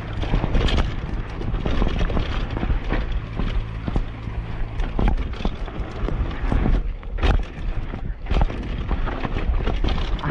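Downhill mountain bike rolling fast down a bumpy, rooty dirt singletrack, picked up by a camera mounted on the bike: a constant irregular rattle and clatter of knocks from the bike over the rough ground, with a low rumble of wind on the microphone. A few harder knocks stand out about seven seconds in and again a second later.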